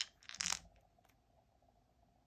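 A handful of small astrology dice rattling in cupped hands and clattering onto a tabletop: a short burst of clicks in the first half second, with a couple of faint ticks as they settle.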